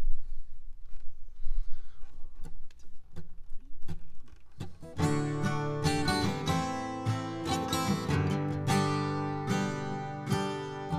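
Two acoustic guitars: a few soft clicks and stray plucked notes, then about halfway in both guitars start playing a song's intro together, with no singing.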